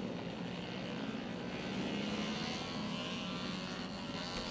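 Faint, steady buzz of small motorcycle engines running out on the track, swelling a little in the middle.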